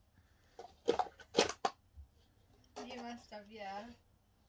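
Speech: a person's voice, with a few short sounds about a second in and talk near the end ('yeah').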